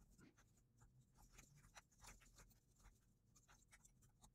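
Near silence with very faint, irregular computer keyboard clicks as code is typed.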